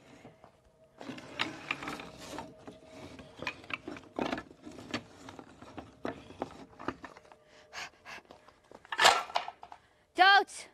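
Wooden slats being pulled off a plywood plank and stacked by hand, a run of clattering knocks and scraping wood starting about a second in, with the loudest knock near the end.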